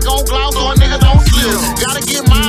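Hip hop beat with a rapping voice over it: deep 808 bass notes that drop in pitch, several in quick succession just after the middle, under quick hi-hat ticks.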